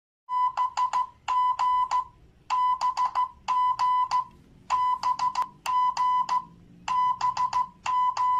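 Electronic beeping: one high, steady-pitched tone pulsed in quick groups of about four beeps. The groups come in pairs a second apart, and the pattern repeats roughly every two seconds.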